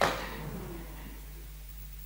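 A brief sharp sound right at the start that fades within about half a second, then steady room tone with a low hum.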